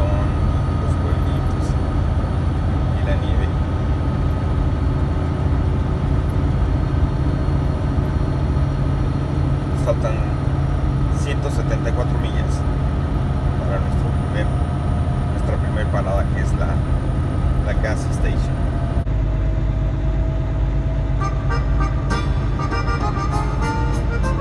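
Semi-truck engine drone and road noise heard inside the cab while cruising at a steady speed. About nineteen seconds in the sound changes abruptly, and music with a regular beat comes in near the end.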